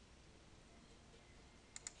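Near silence with faint room hiss, then a quick pair of computer mouse clicks near the end.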